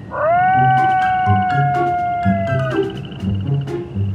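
A single long wolf-howl sound effect: it rises quickly at the start, holds, and sags slightly before cutting off after about two and a half seconds. It sits over light children's background music with a steady beat.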